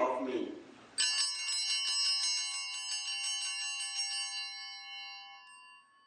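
Altar bells, a cluster of small sanctus bells, shaken repeatedly and ringing with several clear tones, then fading out over a few seconds. They ring at the elevation of the chalice during the consecration at Mass.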